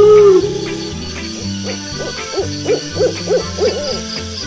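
Owl hooting: one loud drawn-out hoot at the start, then about a second and a half in a run of short, quicker hoots, about three a second.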